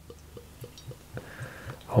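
Beer being poured from a bottle into a tall thin glass, faint: a run of small ticks, then a soft hiss in the second half as the glass fills.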